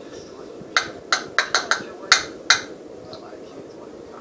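A plastic pill crusher tapped sharply against a small plastic medicine cup, seven quick hard clicks over about two seconds, knocking the crushed pill powder into the cup.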